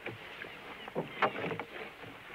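Water sloshing around a small wooden fishing boat, with irregular knocks and clatter from work on board as a line is hauled in over the side; one sharp knock about a second and a quarter in is the loudest.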